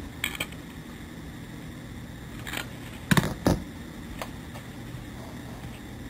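Handling noise from working on an e-bike motor controller: a few short clicks and knocks, the loudest a quick cluster about three seconds in, over a steady low background hum.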